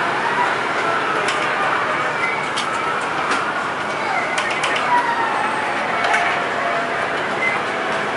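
Busy street-food stall ambience: a steady hiss, the chatter of voices in the background, and scattered sharp clicks of metal tongs on the grill trays.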